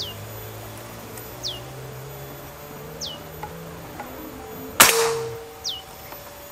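A single shot from a PCP Morgan Classic air rifle charged to 3000 psi, a sharp crack about five seconds in with a short ringing tail. Faint music plays underneath, and a high falling chirp repeats about every second and a half.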